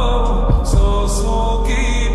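Slowed, reverb-heavy lofi version of a qawwali song: a male voice sings a long held note over a slow beat, with deep drum hits about half a second in.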